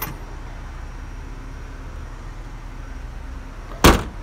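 A steady low rumble, then a single loud slam near the end as the 2003 Hyundai Santa Fe's tailgate is shut.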